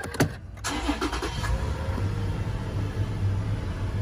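A 2010 Toyota Prado Kakadu's petrol V6 being started with the push button. There is a click and a brief crank, and the engine catches within about a second. It flares briefly, then settles into a steady idle.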